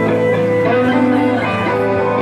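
A live band playing a guitar-led classic rock song, with acoustic and electric guitars over bass.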